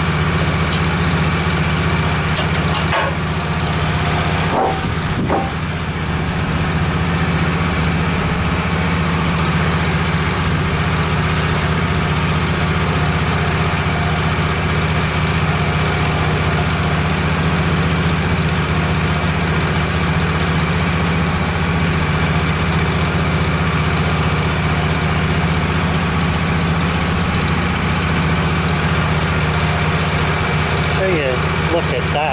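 Wood-Mizer LT15 sawmill's engine running steadily, not cutting, with a few short knocks near the start as boards are handled on the mill bed.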